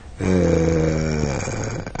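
A man's drawn-out hesitation sound, one long held 'aah' at a steady low pitch lasting about a second and a half and fading out near the end.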